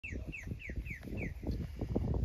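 A bird calling: five quick descending whistled notes, about four a second, then stopping, over a low, uneven rumble.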